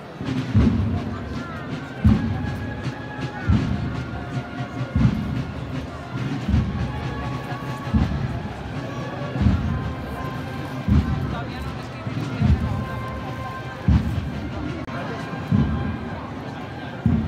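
Procession bass drum beating a slow, steady funeral pace, one stroke about every second and a half, over the murmur of a crowd.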